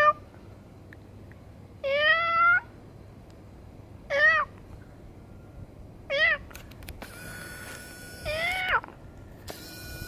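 Tabby cat meowing repeatedly: about four meows roughly two seconds apart, each under a second long, the last one dropping in pitch at its end.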